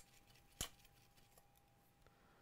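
Near silence on a workbench, broken by one short, sharp click a little over half a second in and a fainter tick later, over a faint steady tone.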